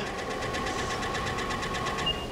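Steady electric whine and hum from a Southwestern Industries Trak DPM CNC bed mill running under power, with a fast, even pulsing over it. The whine stops right at the end.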